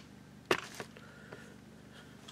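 A sharp knock about half a second in, followed by a lighter one just after, over quiet room tone: handling noise from the camera being touched and adjusted.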